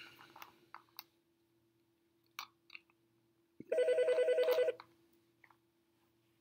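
A trilling electronic ring, about a second long, pulsing roughly ten times a second, starting a little past halfway. A faint steady hum runs underneath, with a few faint clicks before the ring.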